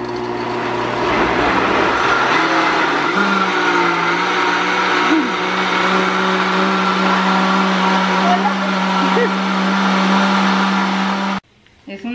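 Countertop blender running, blending a thick mango and lime pie filling; its motor pitch steps up about three seconds in, holds steady, and cuts off suddenly near the end.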